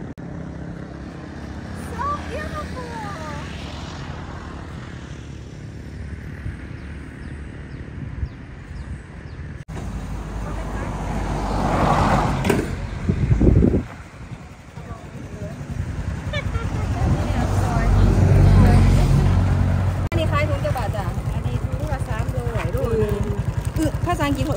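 Small step-through motorcycle engine idling steadily close by, with road traffic going past; louder passing vehicles swell up about twelve and eighteen seconds in.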